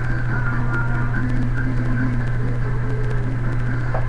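A steady low electrical-sounding hum, with faint music playing underneath it.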